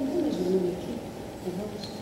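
A woman's voice making wordless, bird-like calls that glide up and down in pitch. There is a longer phrase in the first second and a short dip about one and a half seconds in.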